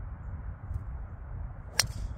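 TaylorMade SIM driver striking a golf ball off the tee: one sharp crack near the end. Low wind rumble on the microphone underneath.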